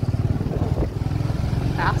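Motorcycle engine running at low speed with a steady, rapid low pulse, heard from the rider's seat.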